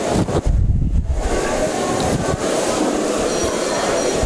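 Loud, steady rumbling noise with a deep low thump about half a second in.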